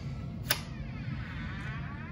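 A single sharp click about half a second in, a light switch being flipped on, then faint room noise.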